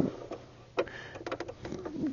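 Light clicks, then a quick run of small ticks, from a domestic sewing machine being handled as its handwheel is turned by hand to bring up the take-up lever.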